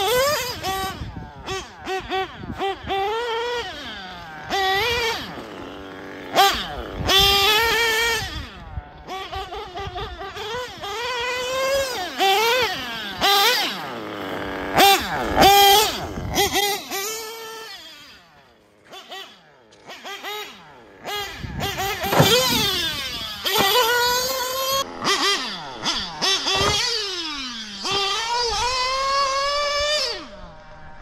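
Nitro engine of a TLR 8ight-XT RC truggy revving up and down over and over as it is driven, its high pitch rising and falling with the throttle. It goes quieter for a couple of seconds a little past halfway, and near the end the pitch falls away in one long drop.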